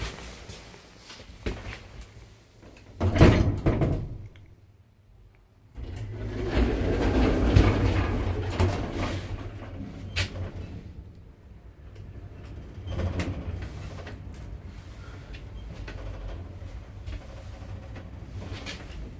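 Passenger lift at the ground floor: the manually opened landing door shuts with a clunk about three seconds in. After a short pause the car's automatic doors slide closed and the lift starts, settling into a steady hum.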